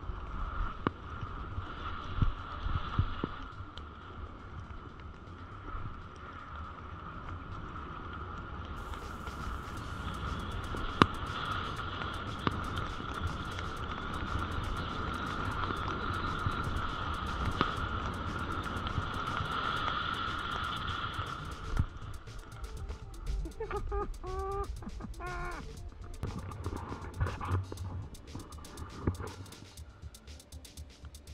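Wind and snow rush on an action-camera microphone as the rider slides down through fresh snow, with a steady whistling tone that cuts off suddenly about two-thirds of the way in. A couple of short shouts come near the end.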